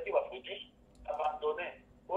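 Speech only: a person talking in short phrases with brief pauses.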